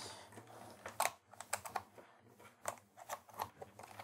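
Faint, irregular clicks and taps of plastic parts and connectors being handled: a Raspberry Pi 3 case, cables and keyboard on a desk, with short gaps between the clicks.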